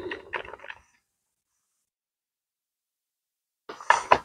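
Mostly dead silence, with a few faint clicks in the first second and a short sound just before the end.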